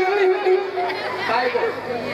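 Speech only: men talking on a stage, one voice through a handheld microphone.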